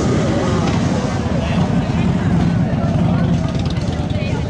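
A motorcycle engine running, its low rapid pulse steady throughout, with crowd chatter over it.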